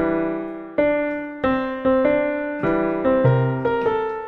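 Piano voice on an electronic keyboard playing a slow melody over left-hand chordal accompaniment, each note or chord struck and left to ring and fade.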